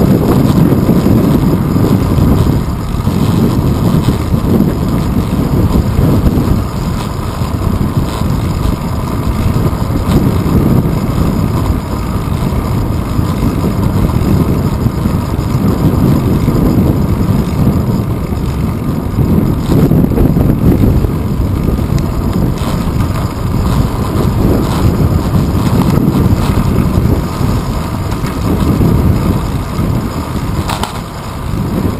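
Loud, gusty wind buffeting on the microphone of a handlebar-mounted GoPro camera on a moving bicycle, with the rumble of the bike rolling over the road beneath it.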